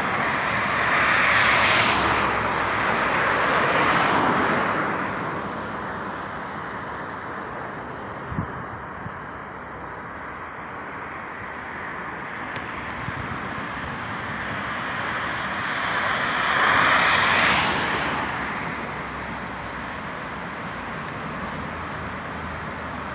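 Highway traffic: vehicles going past with a rising and falling whoosh, one loud pass in the first few seconds and another about three-quarters of the way through, over a low steady road rumble.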